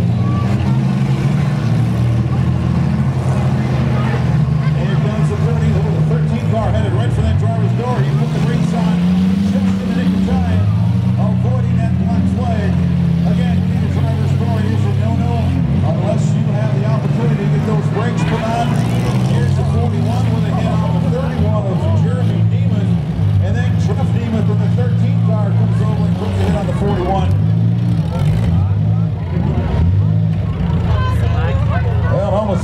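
Several compact demolition derby cars' engines running hard, their pitch rising and falling again and again as they accelerate and reverse, with occasional bangs of cars colliding.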